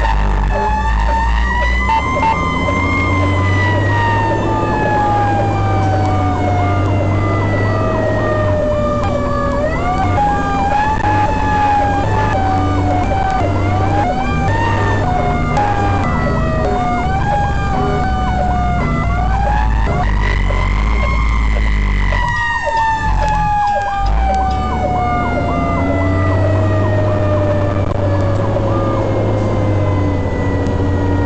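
Fire engine siren wailing over a steady low rumble of the truck. The siren's pitch rises and falls slowly, with a stretch of quicker rises and falls in the middle.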